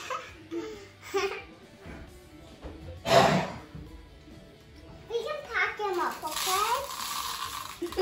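Young children's voices and laughter, with faint background music at first.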